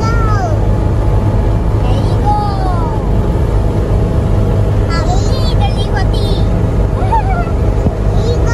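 Steady engine and road drone heard inside a moving Lada Niva. Over it, two young girls in the back seat give short squeals and laughter a few times.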